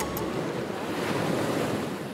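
Ocean surf washing, a steady rush of breaking waves that swells a little and eases slightly near the end.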